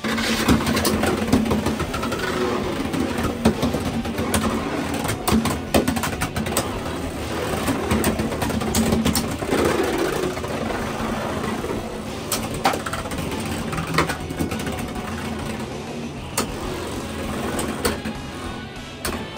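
Beyblade X spinning tops whirring as they race around a plastic stadium floor, with sharp clacks each time they collide. It starts suddenly with the pull of a string launcher.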